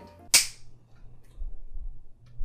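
A single sharp hand clap, followed by a faint low rumble of room noise.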